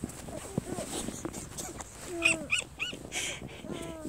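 A toddler's short high-pitched vocal sounds: three quick calls in a row a little past the middle, with fainter little sounds before them.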